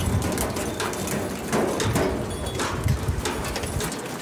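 DNG automatic jigging reel hauling in a line of hooked fish: irregular knocks and thumps as fish and line strike the reel's arm and the boat's side, over a low rumble from the boat.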